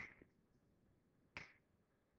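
Two sharp finger snaps, one at the start and one about a second and a half later, evenly timed like a slow beat, with near silence between them. The steady spacing acts out a signal that repeats routinely, a periodic train.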